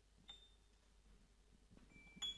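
Near silence: quiet room tone, with one faint, short high ping about a third of a second in.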